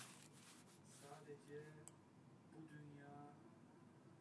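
Near silence: room tone with a faint, barely audible voice twice and a single short click just before the middle.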